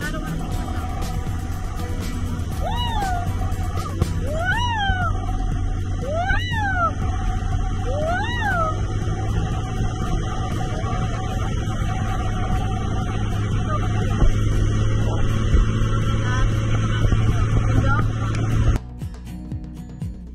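Steady rush of wind on the microphone of a camera hanging from a parasail, mixed with background music; four rising-and-falling calls sound between about three and nine seconds in. Near the end the wind noise cuts off suddenly and only quieter music is left.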